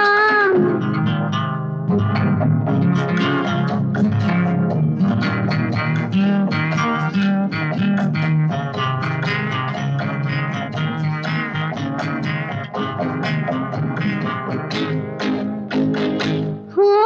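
Instrumental interlude of a Hindi film song: fast plucked guitar notes over a steady bass line, with a held sung note ending just after the start.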